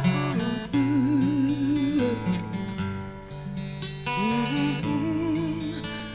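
Live acoustic folk music: acoustic guitars playing under a slow melody of held notes that waver in pitch, quieter in the middle.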